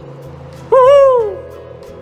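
A man voicing a ghostly "woooo" wail, one long call that rises and then falls, over a steady droning background of music.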